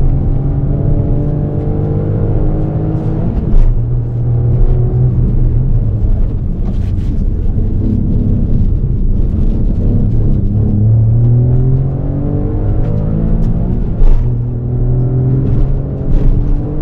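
Honda N-ONE's three-cylinder engine pulling hard under repeated acceleration. Its pitch climbs and drops back several times as it revs out and shifts, most sharply about three and a half seconds in and again near the end.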